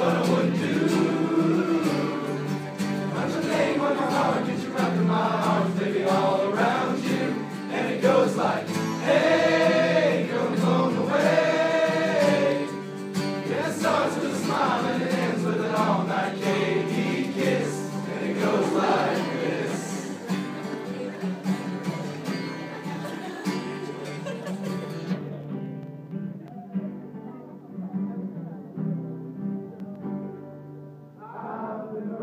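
A male group of about two dozen young men singing a pop-country song together, accompanied by a strummed acoustic guitar. The singing is loudest in the first half and grows softer about halfway through.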